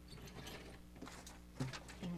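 Faint scattered clicks and rattles from a vertically sliding chalkboard as its panels are gripped and pulled along their pulley tracks, with a short knock about a second and a half in.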